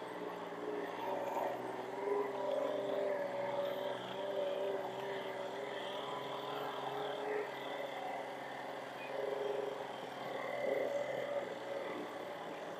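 Vehicle engine running at low, steady speed: a drone of several held tones whose pitch wavers only slightly.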